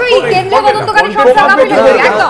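Several people talking over one another at once: overlapping crosstalk in a heated discussion.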